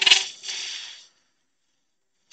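Carbide cup cutter biting into the spinning wood inside a hollow form on a lathe: a sharp click and a short hissing scrape of cutting that cuts off suddenly about a second in.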